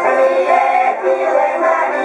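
Women's folk singing group singing a Bulgarian village folk song together, with an accordion accompanying them.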